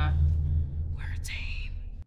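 Film soundtrack: a deep boom dying away, with a short vocal sound about a second in; the audio cuts off abruptly at the end.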